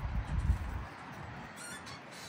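Low wind rumble on the microphone for about the first second, loudest about half a second in, then a faint, steady outdoor background hiss.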